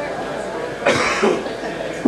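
Low voices in the room with a single cough about a second in.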